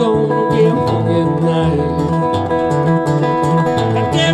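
Acoustic guitar played fingerstyle: a busy, rhythmic picked groove with a steady bass line under it.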